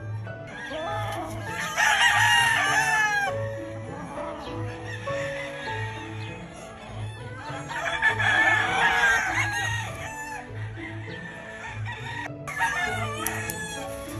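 Gamefowl roosters crowing: long crows about two and eight seconds in and a shorter one near the end, over background music with a steady low beat.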